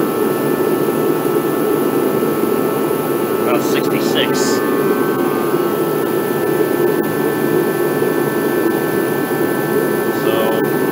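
Craftsman torpedo-style kerosene heater running: a steady roar from its burner and fan, with a faint steady whine over it.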